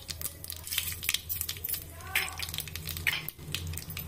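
Mustard seeds spluttering in hot oil and ghee with chana and urad dal in an aluminium pressure cooker: rapid, irregular pops and crackles over a low steady hum.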